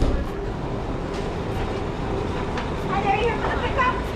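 Fast-food restaurant interior ambience: a steady low hum and rush of kitchen equipment and ventilation, with faint voices of staff coming in near the end.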